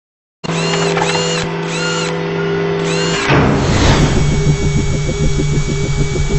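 Produced intro sound effects for an animated logo: electronic whirring tones with a repeated arcing chirp, then a whoosh about three seconds in and a fast, even mechanical-sounding pulse.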